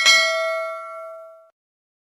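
Notification-bell 'ding' sound effect of a subscribe-button animation: a single bright bell strike that rings and fades for about a second and a half, then cuts off abruptly.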